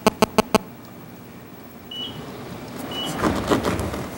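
A few sharp electronic buzzing clicks come through the meeting's microphone system in the first half second. Quiet room sound follows, with low murmuring voices rising near the end.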